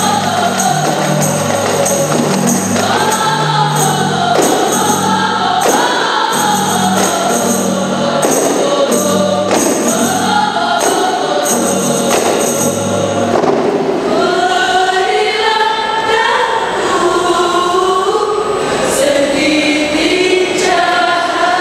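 Women's chorus singing a qasidah (Islamic devotional song) to rebana frame drums beaten in a steady rhythm. About two-thirds of the way through, the drumming stops and the voices carry on unaccompanied.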